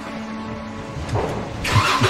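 Car engines running as vehicles pull away, rising to a louder rush near the end.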